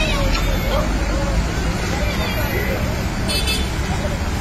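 Crowded KSRTC bus running with a steady low engine rumble, over a hubbub of passengers' voices at the packed door; a brief high-pitched sound cuts through a little past three seconds in.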